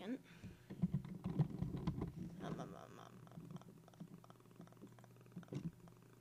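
Rustling, crackling handling noise close to a microphone, heaviest in the first half, over a steady low hum.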